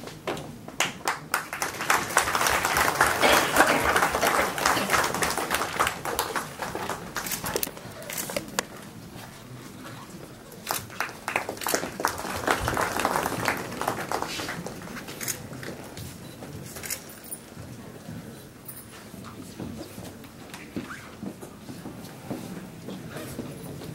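Applause from a small gathering in a room, swelling twice: once about two seconds in for several seconds, and again near the middle. Scattered small clicks and knocks fill the gaps between.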